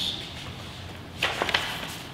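Sheets of paper being handled at a table: two quick, crisp sounds close together about a second and a quarter in, over quiet room tone.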